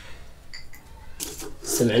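A few light clinks and rattles of small china coffee cups being handled on a tray, with a voice starting near the end.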